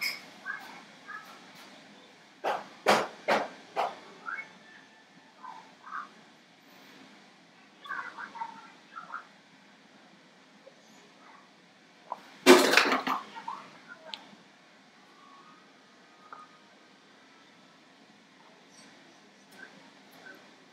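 A woman's wordless throat and mouth sounds as she downs a blueberry-ginger wellness shot and reacts to its taste. There are a few short, sharp sounds about three seconds in, and a loud throaty burst about a second long around twelve seconds in, just after she swallows. Small murmurs and mouth noises fall in between.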